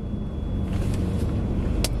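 Steady low rumble of road and engine noise inside a moving car's cabin, with a single sharp click near the end.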